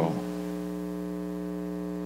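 Steady electrical mains hum with many evenly spaced overtones, unchanging throughout.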